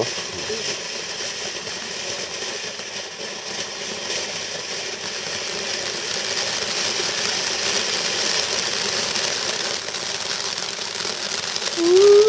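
Weco Heaven firework fountain burning, its spark spray giving a steady hiss with fine crackling that grows gradually louder.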